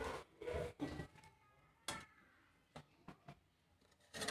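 A few faint taps and clicks in a quiet room, the sharpest just before two seconds in, with small ticks after it, from hands handling quail eggs at a pot of water.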